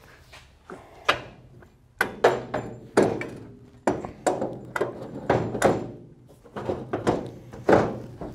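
Irregular metal clunks and knocks, about a dozen, each ringing briefly, as a steel tube section is pushed and wiggled into place between the VW chassis's rear torsion housings for a test fit. The piece is catching on something up front rather than sliding home.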